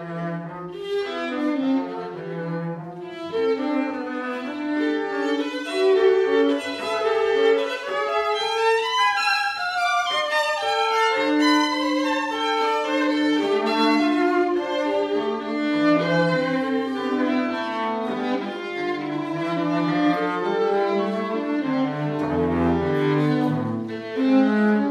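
A violin and a cello playing a classical duet live, both bowed, with many quick note changes in the violin line over the cello. The cello's low notes come through strongly near the end.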